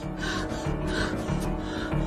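Tense film score with held tones and a steady low pulse about every half second, under a person's quick, gasping breaths.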